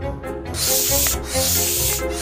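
Hand air pump stroke: one long hiss of air about half a second in, over background music.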